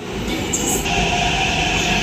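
Metro train running alongside a station platform, a steady rumble with a high whine that sets in about a second in.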